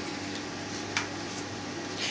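Quiet room tone: a steady faint hum, with one short faint click about a second in.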